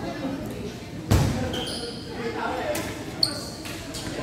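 Badminton players' court shoes squeaking on the indoor court floor, short high squeals twice, with a heavy thud about a second in and a sharp click a little after three seconds. Voices chatter faintly underneath.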